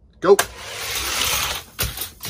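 Die-cast Hot Wheels cars released from a starting gate with a sharp snap, then a steady rolling whir of small plastic wheels running down orange plastic track. A knock near the end.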